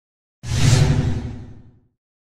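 Whoosh sound effect for an animated channel-logo reveal. It starts suddenly about half a second in, with a low rumble beneath the hiss, and fades away over about a second.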